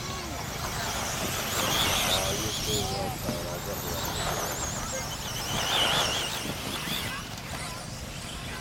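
Radio-controlled 1/10-scale electric off-road buggies racing: a high, warbling whine from their motors and gears that wavers with the throttle, loudest about two seconds in and again near six seconds.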